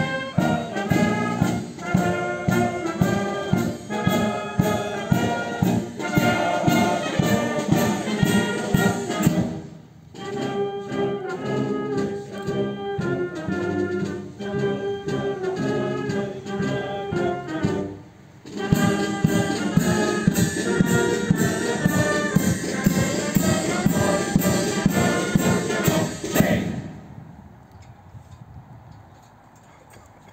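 A town wind band, led by trumpets and trombones, plays with a steady beat, with two brief dips in the music about ten and eighteen seconds in. The band stops a few seconds before the end, leaving only a faint background.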